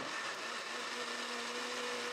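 Electric kitchen blender running steadily, grinding a wet mix of softened rice paste and anchovy stock. It is heard turned down in volume, a steady hiss with a faint hum.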